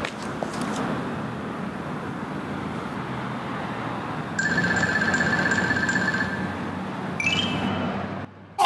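City street traffic noise, cars passing. About four seconds in, a high electronic buzzing tone sounds for about two seconds. A few short higher beeps follow near the end.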